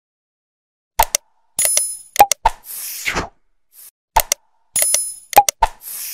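Subscribe-button animation sound effect: sharp mouse-click strokes, a bright bell-like ding and a short whoosh, starting about a second in and repeating about three seconds later.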